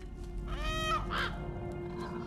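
A crow cawing twice in quick succession, about half a second in, over a sustained music bed.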